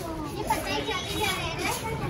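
Children's voices in the street, several chattering and calling out over one another.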